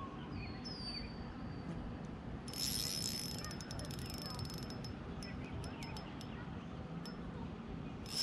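Ultralight spinning reel being cranked to retrieve a lure: a high whir with rapid clicks that starts about two and a half seconds in and comes and goes, over a low steady rumble.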